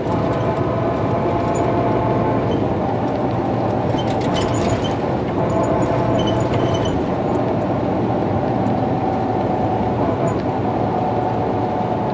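Cabin sound of a 2017 MCI J4500 motor coach cruising, heard from a passenger seat: its Detroit Diesel DD13 engine and Allison B500 driveline running steadily under road and tyre noise, with a steady whine. A few light clicking rattles come about four seconds in.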